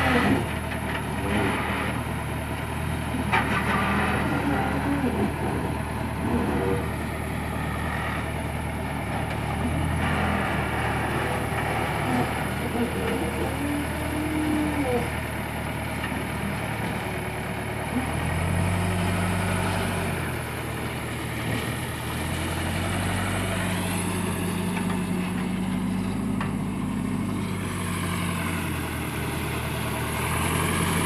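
Heavy diesel engines of a backhoe loader and a farm tractor running steadily, with the engine note rising for about two seconds roughly eighteen seconds in and again for about five seconds near the end.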